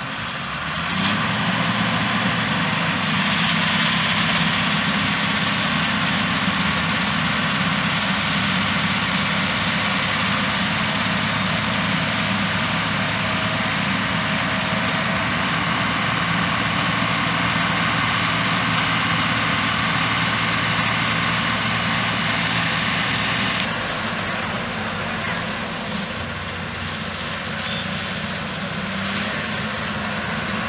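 Engine of heavy construction machinery running steadily, growing louder about a second in and easing off about two-thirds of the way through.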